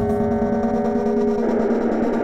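Techno breakdown: the kick drum drops out, leaving a held synth chord. A rush of noise swells in about halfway through.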